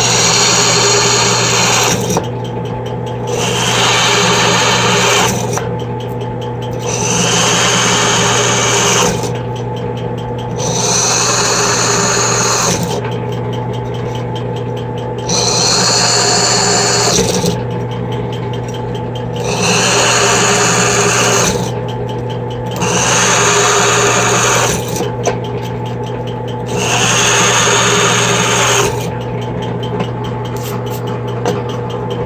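Benchtop drill press running steadily while a 3/16-inch bit bores out vent holes, one after another, in an aluminium hub-motor side cover. Each hole makes a cutting sound lasting about two seconds, repeating roughly every three and a half seconds over the press motor's steady hum.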